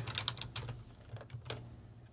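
Typing on a computer keyboard: a quick run of keystrokes, then a few scattered ones.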